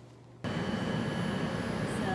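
Steady outdoor rumble of an elevated train platform, a low noise with a faint high whine running through it. It starts abruptly about half a second in, after brief near silence.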